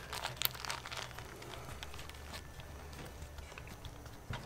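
Soft crinkling and rustling of a flour tortilla being tucked and rolled into a burrito by hand on a plastic cutting board, in scattered small strokes, most of them in the first second and a half.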